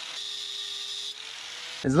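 Angle grinder cutting a steel bolt down to length: a steady motor whine with a gritty cutting hiss, stopping just before the end.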